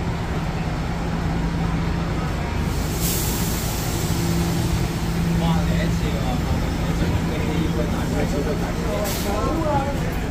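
Steady low drone of idling buses, with a short hiss of released compressed air about three seconds in and another near nine seconds.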